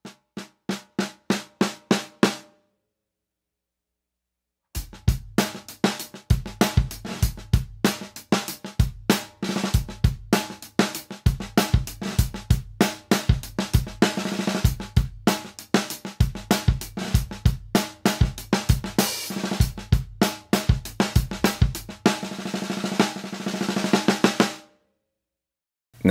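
Snare drum fitted with PureSound Custom series 24-strand steel snare wires, struck with single strokes at about four a second for a couple of seconds. After a short pause comes a full drum-kit groove with bass drum, snare and cymbals, which stops about a second and a half before the end.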